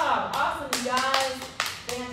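A woman clapping her hands, about half a dozen irregular claps, with a woman's voice calling out over them.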